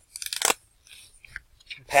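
Packaging crinkling and crunching as a router is lifted out of its box: a quick burst of crackles in the first half second, then a few faint rustles and a small click.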